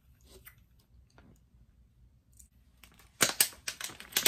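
Plastic candy wrapper being handled: a few faint clicks, then from about three seconds in a loud run of sharp crinkling and crackling.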